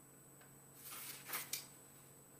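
Paper rustling from a book's pages being handled and turned: a short burst of soft rustles about a second in, after near-quiet room tone.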